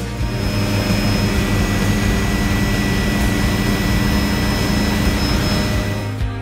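Helicopter in flight: a steady turbine whine over the fast beat of the main rotor.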